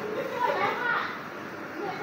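A high-pitched voice, like a child's, calling out about half a second in, over a background murmur of other voices.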